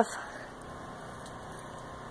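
Low, steady background hum and hiss with no distinct event, after a voice cuts off at the very start.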